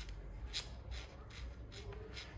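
Faint rubbing and a couple of light clicks as a thru-axle is turned by hand, threading through a bicycle's front hub into the fork, over a low steady hum.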